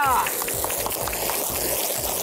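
Water hissing steadily from a garden-hose spray gun onto a soapy rug, over background music with a steady low beat.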